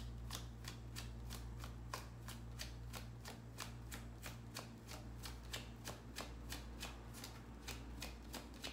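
A tarot deck being shuffled overhand by hand, the cards slapping together in quick, regular strokes about three times a second.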